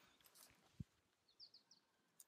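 Near silence: faint rustling of hands working loose garden soil, one soft thump a little under a second in, and three quick faint high bird chirps about halfway through.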